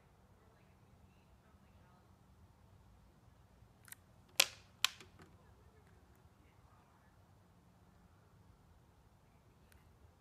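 A quick cluster of three or four sharp plastic clicks about four seconds in, the second the loudest, then a faint one near the end, over a quiet room: a Genie garage door remote being handled and its button pressed while the opener is being programmed.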